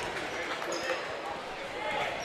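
Gymnasium crowd murmur, with a basketball being dribbled on the hardwood court.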